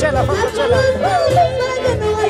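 Live festival band music: a wavering, ornamented melody line over a steady low accompaniment.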